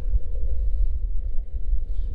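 Wind buffeting the microphone on open water: a steady, loud, low rush with no distinct events.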